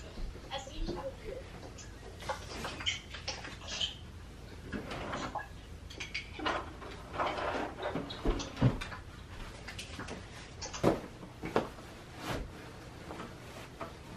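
Scattered rustles, knocks and bumps of household objects being handled and put away, with faint indistinct voices.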